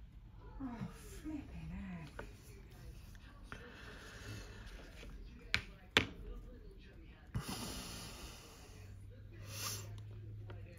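A plastic pipette squeezed to flush cleaner through a small airbrush part, giving short hissing, spluttering spurts of air and liquid near the end, with two sharp clicks a little past halfway.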